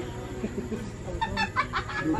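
A chicken clucking: a quick run of about five clucks in the second half.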